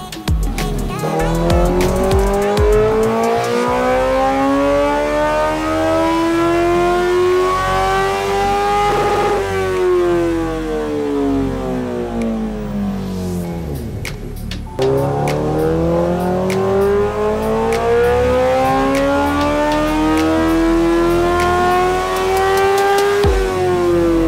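Honda CBR1000RR inline-four engine making two full-throttle dyno pulls on its stock ECU map: each time the revs climb steadily for about eight seconds to near redline, then fall away as the throttle is closed.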